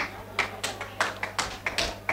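A quick, irregular run of sharp taps, about five or six a second, over a steady low hum.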